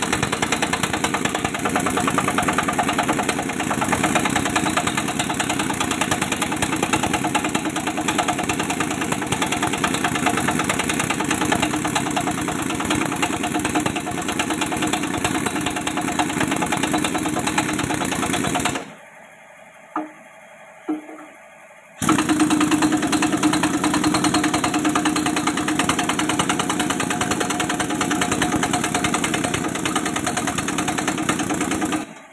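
An engine running steadily, with a gap of about three seconds about two-thirds of the way through before it resumes.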